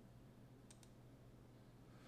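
Near silence over a low steady hum, with two faint computer-mouse clicks in quick succession about three quarters of a second in.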